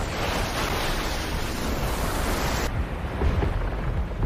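Sound effect of a giant golem's light beam and the fire blast it sets off: a steady rushing noise over a deep rumble. The high hiss drops away about two-thirds of the way through, leaving the rumble.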